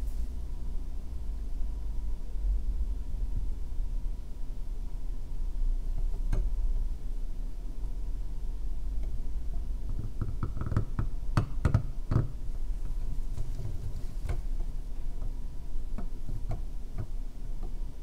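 Seal-carving knife cutting into a small stone seal held in a carving vise: scattered small scrapes and clicks, one about six seconds in and many more in the second half, over a steady low hum.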